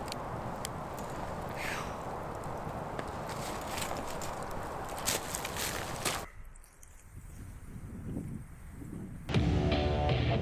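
Campfire burning with scattered crackles and pops, which cuts out abruptly about six seconds in to a much quieter stretch. Music comes in near the end.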